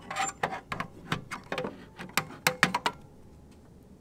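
Apple laptop charger being unplugged and pulled out of a power strip inside a desk's aluminium pop-up outlet box: a quick run of sharp plastic clicks and knocks against the metal housing, stopping about three seconds in.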